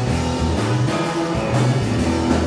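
Live rock band playing with electric guitars, bass and drum kit in a steady beat.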